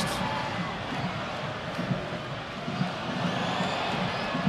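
Soccer stadium crowd, a steady hubbub of many voices.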